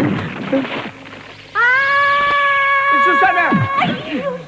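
A loud rushing sound effect for about the first second, then a long, high-pitched held scream from a cartoon girl that drops away in pitch near the end.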